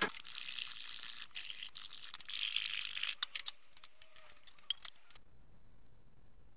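Metal paint tins being handled and opened: about three seconds of dense rattling and scraping, then a few sharp clicks and scattered taps that stop about five seconds in.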